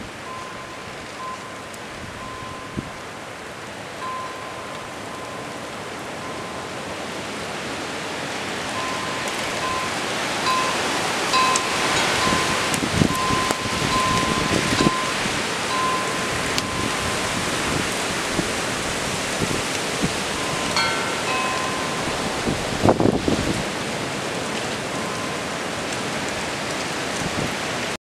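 Blizzard wind of about 40 mph blowing in gusts, building up about a third of the way in and surging at times. A faint ringing tone comes and goes through it, and a few low thumps sound with the strongest gusts.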